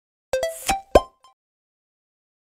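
Short end-card sound effect: four quick pitched plinks within about a second, the last one highest.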